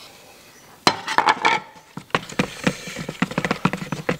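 Paint spatula scraping and tapping against the rim and inside of a plastic bucket while two-pack paint is mixed. A sharp knock comes about a second in, followed by a quick, irregular run of small clicks and taps.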